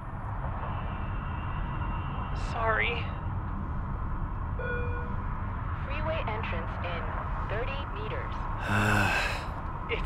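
Steady low rumble of a car's cabin in slow traffic. Over it come a man's strained, wordless vocal sounds and a sharp gasp near the end, with a short beep about five seconds in.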